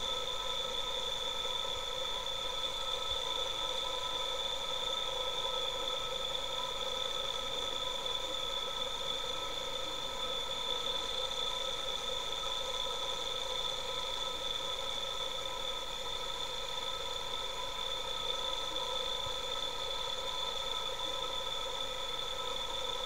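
A 360-watt battery-powered permanent-magnet electric motor running at constant speed: a steady whine made of several high tones.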